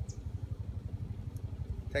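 A vehicle engine idling: a steady, evenly pulsing low rumble, with a faint click or two from the ratchet being handled.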